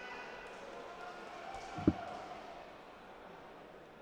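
A steel-tipped dart striking a bristle dartboard once with a short thud, about two seconds in, over the low murmur of a large hall crowd.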